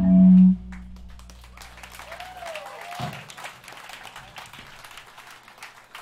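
A hardcore band's song ends on a held low note cut off about half a second in, leaving fading amplifier hum, then scattered clapping and a cheer from a small club audience.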